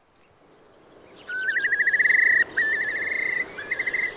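Background ambience fading in from near silence, then loud trilling animal calls starting a little over a second in. The calls come as rapid pulsed trills on a nearly steady pitch, in several runs with short breaks.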